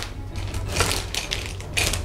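Sealed plastic bags of building-brick pieces crinkling in irregular bursts as they are taken out of the box and handled.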